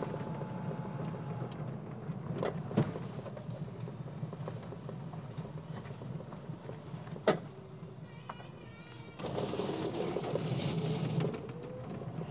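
GOPO Beach Buggy electric four-passenger cart driving on asphalt some way off, mostly faint under the outdoor background with a few light knocks. From about nine seconds in, as it drives back nearer, a hiss and a slowly rising whine come up.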